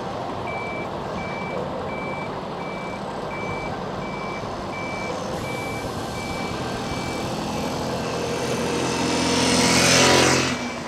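Heavy truck's reversing alarm beeping steadily at one high pitch, about two beeps a second, over the low running of the diesel engines of race transporter trucks. The engine sound grows louder towards the end and a loud hiss swells up just before the end.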